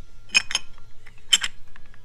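Metal parts clinking as a plate is fitted onto the transmission's gear shaft: two pairs of sharp clinks about a second apart.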